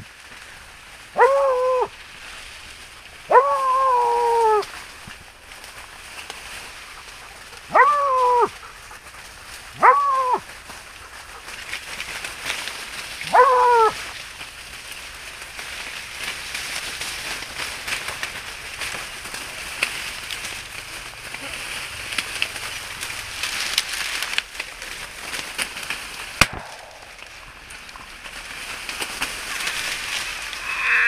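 A hog-hunting dog baying five times in the first fourteen seconds, drawn-out calls that drop in pitch at the end. After that, dry sugarcane leaves rustle as someone pushes through the cane, with one sharp click near the end.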